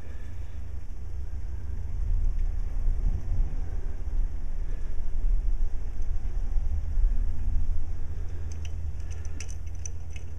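A low, steady rumble that swells in the middle and then eases back. Near the end come a few faint small clicks as fine steel music wire is handled.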